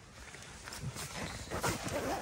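A dog asleep in a pet shelter, breathing faintly.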